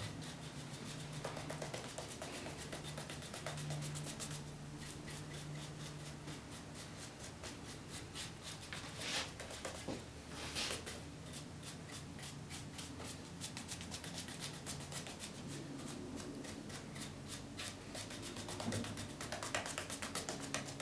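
Paintbrush bristles brushing milk paint onto wooden chair spindles: faint soft rubbing strokes, with two louder swishes about halfway through.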